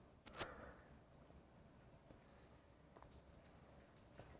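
Dry-erase marker writing on a whiteboard: faint, quick scratchy strokes, with a louder stroke or tap about half a second in.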